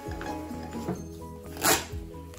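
Background music over a thermal label printer feeding out a label, with one short, sharp burst of noise near the end.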